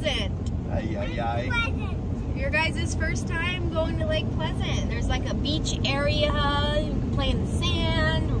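Steady low road and engine rumble inside a moving car's cabin, with a young child's high-pitched vocalizing, wordless babble and squeals, coming and going over it.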